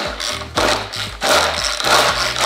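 Pull-cord manual food chopper pulled again and again, about two pulls a second, its blades spinning and rattling through big chunks of raw carrot in the plastic bowl during the first rough chop.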